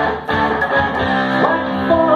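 Electric guitar played live through a PA in a rock-blues song, an instrumental stretch between sung lines, with a brief dip in level just after the start.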